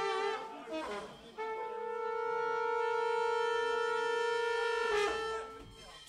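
A horn playing long held notes: a short note ends early, then after a brief break one note is held steady for about three and a half seconds with a slight waver, and it fades near the end.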